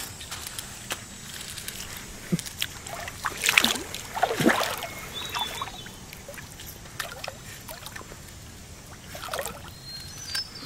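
Water sloshing and splashing in short bursts, two around the middle and one near the end, as a hooked bass struggles at the surface of shallow river water.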